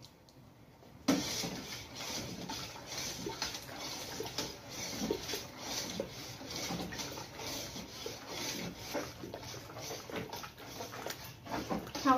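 A long metal spoon stirring liquid in a large stainless-steel stock pot, with repeated scrapes and light clinks against the pot and the liquid sloshing. The stirring starts suddenly about a second in and keeps the thickening rice-flour atole from sticking to the bottom and forming lumps.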